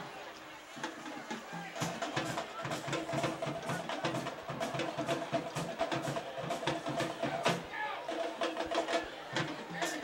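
Drum-led music with rapid drum hits and sharp stick clicks, starting about a second in.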